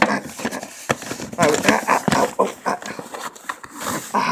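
Hard plastic clicking and rattling as a hand fishes a die-cast Hot Wheels car out from inside a plastic playset, with several sharp knocks and some low voice sounds among them.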